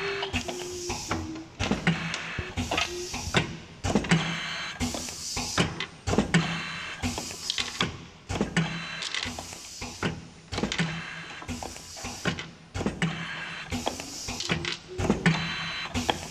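Automatic labelling machine for nail polish bottles running. A repeating cycle of sharp clicks and knocks with bursts of hiss comes about every two seconds, over a steady low hum.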